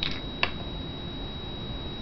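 Two small clicks about half a second apart from handling a small cosmetic pigment jar, over a steady background hiss with a faint high whine.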